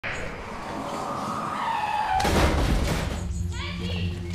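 Car crash: a falling squeal, then a loud impact about two seconds in, followed by a steady low hum and a short shout just before the end.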